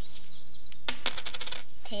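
A coin tossed onto a tabletop: it lands about a second in with a quick run of clinks and a brief metallic ring as it bounces and settles.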